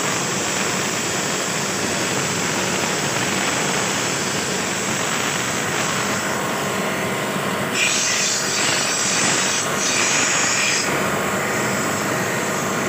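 High-pressure water jet from an AC-cleaning 'steam' washer hissing steadily from a brass nozzle as it sprays into a split air conditioner's outdoor condenser coil. The hiss turns sharper and louder for about three seconds, starting about eight seconds in.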